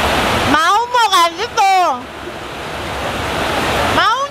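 Steady loud hiss of heavy rain. About half a second in it cuts out abruptly under a short, high voice sound with sliding pitch, then builds back. A similar voice sound starts again at the very end.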